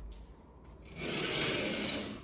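Sheer curtain fabric rubbing against the phone's microphone, a swishing noise that starts about a second in and lasts about a second.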